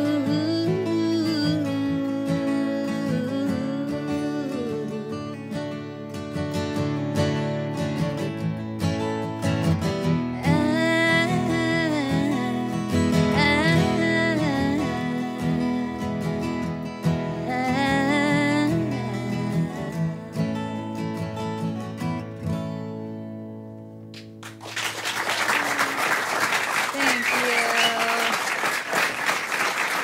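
A woman singing a country song to two acoustic guitars; the singing ends about twenty seconds in and the last guitar chord rings out. From about twenty-four seconds in, the audience applauds.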